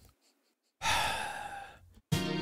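Almost a second of silence, then one long sigh from a man, a breathy exhale that fades away.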